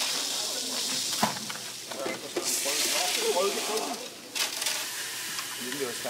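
Fine sand pouring from an inverted jug through a funnel into the load container of a bridge-testing rig, a steady hiss that grows heavier about two and a half seconds in and stops abruptly a little after four seconds.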